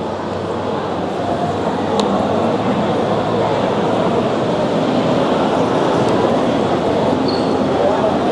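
Exhibition-hall crowd noise: many overlapping voices in a steady din that grows a little louder about two seconds in, with a single sharp click at that point.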